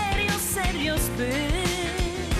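Pop song played by a band with a woman singing lead, over a steady drum beat, bass and electric guitar.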